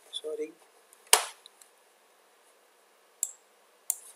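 A sharp computer-mouse click about a second in, with two fainter clicks near the end, as the view is zoomed and scrolled. A brief mumbled voice sound comes just before the first click.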